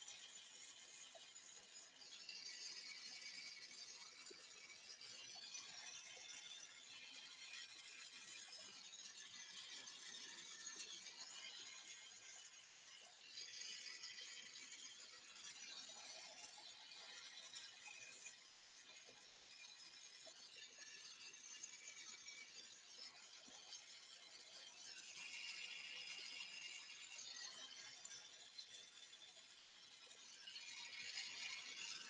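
Near silence, with only a faint hiss from a Carlisle glassworking torch flame that comes and goes in stretches of a few seconds.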